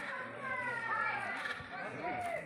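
Several people talking over one another: overlapping outdoor chatter of a small crowd, no single voice standing out.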